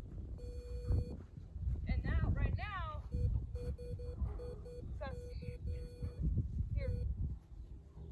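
Wind rumbling on the microphone, with a run of short, evenly pitched electronic beeps and a few high, squeaky calls that bend up and down in pitch.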